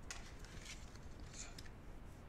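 Faint handling noise of stiff oracle cards being lowered and laid down on a table, with a couple of soft swishes about a third of the way in and near the end.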